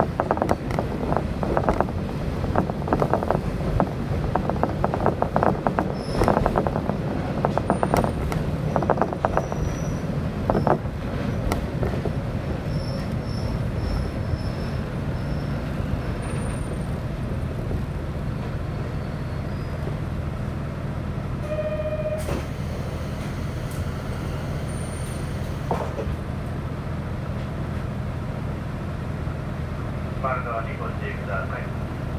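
Diesel railcar rattling over the rails with brief high brake squeals as it slows to a stop, then standing with its diesel engine idling steadily. About 21 seconds in a short electronic tone sounds, followed by a sharp burst.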